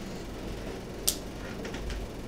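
Whiteboard marker writing on a whiteboard: short scratchy strokes over steady low room noise, the sharpest about a second in and a few fainter ones near the end.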